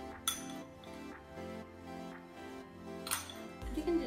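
A metal spoon clinks sharply twice against a small glass bowl while scooping salt, over steady background music.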